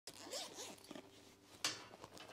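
Handling noise as a tablet's folio case is opened: a few short scratchy, zip-like rustles, then one sharp click about one and a half seconds in.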